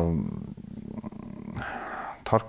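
A man's voice holding a drawn-out vowel that trails off into a low, creaky hum, followed by a short intake of breath near the end.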